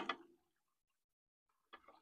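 Near silence, with a couple of faint ticks near the end.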